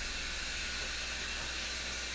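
Shower spray running steadily: a constant, even hiss of water.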